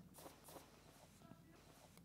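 Near silence: faint room tone with a few tiny soft clicks.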